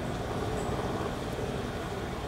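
Steady low engine rumble under a constant background hiss, unchanging throughout.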